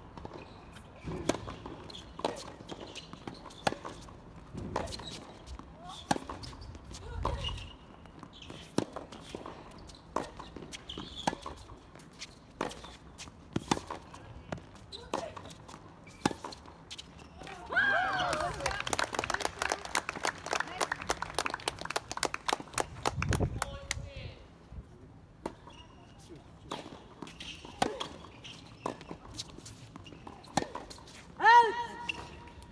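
Tennis rally on a hard court: tennis balls are struck by rackets and bounce on the court, making sharp, irregular pops, with a dense run of hits and bounces about two-thirds of the way through.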